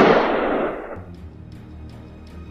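The fading noisy tail of a loud bang, dying away over about a second, followed by background music with a light ticking beat.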